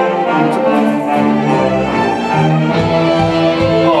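Orchestral music played back in the room: bowed strings hold sustained chords, and low pulsing notes come in about halfway through.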